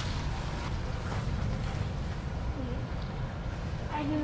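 Steady low rumble of wind buffeting the microphone, with faint voices in the background.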